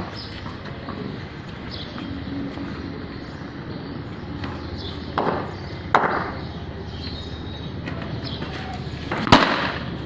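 A single sharp, loud knock near the end from a cricket ball's impact, over steady outdoor background noise, with a couple of shorter, fainter noises midway.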